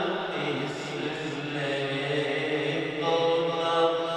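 A solo voice singing a naat, an unaccompanied devotional chant, moving between notes in a slow melismatic line and holding one long note near the end.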